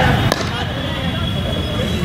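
A single sharp crack of a cricket bat striking the ball, over faint distant voices and a low background rumble.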